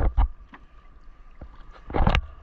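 Knocks and thuds on the wooden hull of an outrigger canoe as a fishing net is hauled in by hand over the side: two sharp knocks at the start, then quieter, then more knocks near the end.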